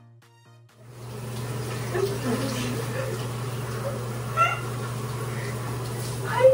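Background music stops about a second in. Water then runs steadily from a bathtub tap over a head of hair as hair dye is rinsed out, with a steady low hum under the splashing. A few brief high vocal sounds rise over the water.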